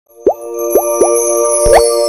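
Logo intro jingle: three short rising pops, then a longer upward swoop, over a held bright chord.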